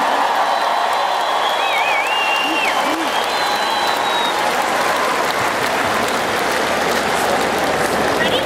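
Arena crowd applauding steadily, with a wavering whistle from the crowd about two seconds in.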